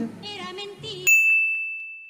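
A single bright ding from an editing sound effect, a bell-like chime struck about a second in that rings on one steady pitch and fades slowly. It marks the cut to a title card.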